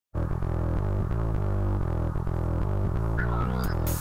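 Opening theme music with a pulsing, low-pitched synth bass line and a steady beat; a higher melody comes in near the end.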